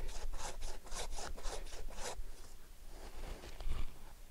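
Silky Zubat curved pruning hand saw cutting into a live tree trunk in quick, even strokes, about five a second. The strokes grow fainter and stop about halfway through. This is the back cut of a hinge cut, taken only until the tree starts to relax.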